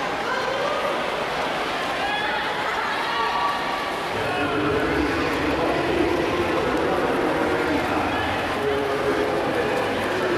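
A crowd of spectators shouting and cheering in an indoor pool hall, many voices overlapping, growing a little louder about four seconds in.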